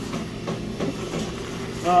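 A steady low mechanical hum, with soft rustling of wrapped drinking straws being handled.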